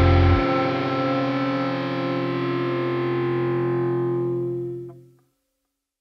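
The ending of a gothic doom metal track: the full band stops about half a second in, leaving a held distorted guitar chord ringing out and fading to silence about five seconds in.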